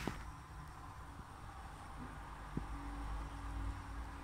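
Quiet kitchen room tone with a low rumble, a sharp click at the very start and a small tick about two and a half seconds in, then a faint steady hum near the end.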